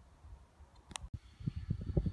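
Faint outdoor quiet with a single click about halfway through, then a low rumble of wind on the microphone with soft knocks, building toward the end.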